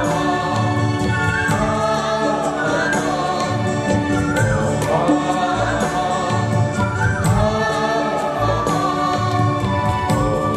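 A mixed choir of men and women singing a song live, with instrumental accompaniment holding sustained chords and bass notes beneath the voices.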